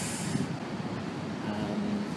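Steady low rumble of vehicle traffic, with a brief hiss at the start and a low hum coming in near the end.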